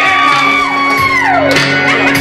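A high whoop, held for about a second and then sliding down, over music with a steady backing in a large room.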